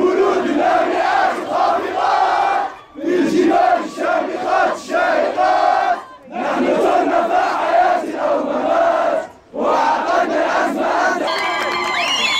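Large crowd of young men chanting a protest slogan in unison, shouted in repeated phrases of about three seconds with a brief break between each.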